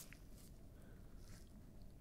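Near silence: faint room hiss, with one faint tick just after the start as the compass is handled in nitrile-gloved hands.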